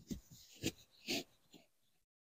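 Foam insert being pressed and rubbed down into a hard plastic case: about four short scuffs and squeaks of foam against foam and the case walls in under two seconds.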